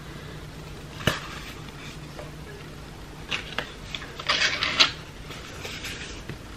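A clear plastic phone case and its packaging being handled: a sharp click about a second in, a few lighter clicks, then a brief crinkly rustle, over a low steady hum.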